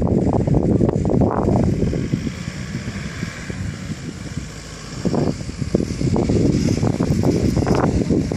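Gusting wind rumbling on the microphone, over four-wheel-drive engines working hard during a snatch-strap recovery of a Nissan X-Trail stuck in soft sand. The noise eases about halfway through and builds again about five seconds in.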